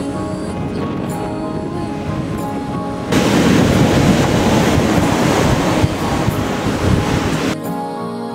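Background music, then about three seconds in the loud rush of a breaking wave and churning surf cuts in over it. The surf cuts off suddenly near the end and the music comes back.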